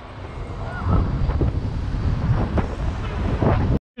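Wind buffeting a GoPro's microphone on a moving bicycle: a steady low rumble. The sound cuts out for a moment near the end.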